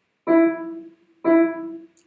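Upright piano: the same single note struck twice, about a second apart, each dying away quickly after the attack. It is a staccato touch played with a relaxed, bouncing wrist.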